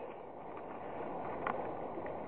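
Quiet, steady outdoor background hiss with one faint short tick about one and a half seconds in.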